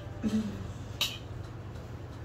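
A spoon clinks once against a bowl about a second in, shortly after a brief low murmur of a voice, over a steady low hum.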